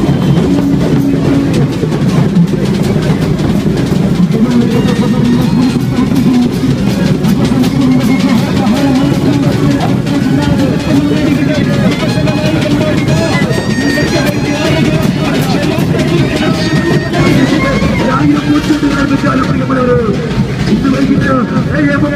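A street brass band with drums, playing continuously and loudly, with a voice over the music.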